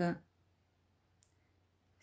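A woman's recited line trails off at the start, then near silence with a single faint, short click about a second in.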